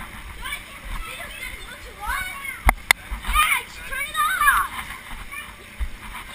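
Children's high voices shouting and squealing while bouncing on an inflatable bouncy castle, with two sharp knocks a bit under three seconds in and low thuds from the bouncing.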